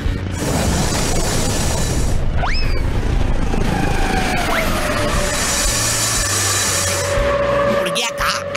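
Cartoon sound effect of a jet engine, a loud steady rush of noise that eases off near the end, under background music.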